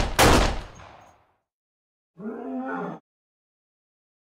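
Two pistol gunshot sound effects about half a second apart, each ringing out for about a second, followed about two seconds in by a brief voice-like sound.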